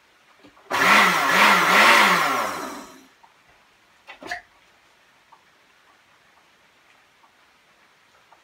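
Countertop blender motor running for about two seconds, blending an iced cocktail, its pitch rising and falling a few times before it stops. A short knock about four seconds in as the jar is handled on its base.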